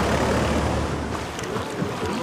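Slow road traffic: a steady low car-engine and tyre rumble under a broad outdoor hiss, the rumble fading about halfway through.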